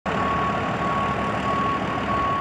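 Aircraft tow tractor's engine running, with a high warning beep sounding steadily over it and breaking off briefly now and then.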